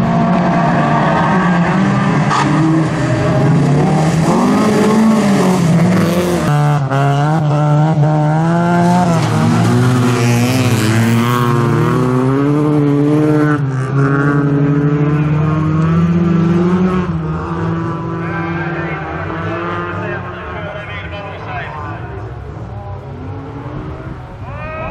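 Several bilcross race cars racing in a pack, their engines revving hard and shifting gear, the pitch repeatedly climbing and dropping. The sound fades somewhat over the last several seconds as the cars pull away.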